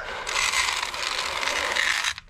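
Feed pellets poured from a plastic scoop into a metal feed trough: a steady rattle that starts a moment in and stops sharply at the end.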